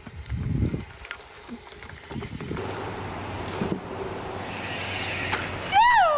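Bicycle rolling along a gravel trail: a low thump about half a second in, then a steady rushing of tyre and wind noise that grows louder. Near the end a person gives a short whooping call that rises and then falls in pitch.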